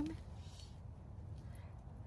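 Steady low rumble of wind outside a tent during a storm, with the end of a woman's word at the very start.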